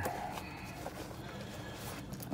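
Low, steady background noise with faint handling of metal ratcheting service wrenches, including one light tap about a second in.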